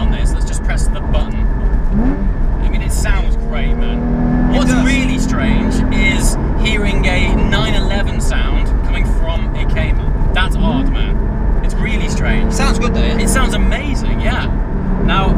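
Porsche Cayman GT4's flat-six engine and exhaust heard from inside the cabin while driving, over a steady low road rumble; the engine note rises twice as the car accelerates.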